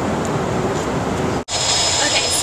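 Steady rushing cabin noise of a jet airliner in flight. About a second and a half in it cuts out for an instant and comes back hissier, with a steady high whine.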